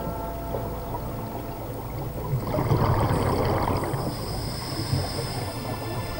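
Scuba diver's regulator exhalation underwater, a burst of bubbles rising about two and a half seconds in and lasting around a second and a half, over a steady low rumble of water noise.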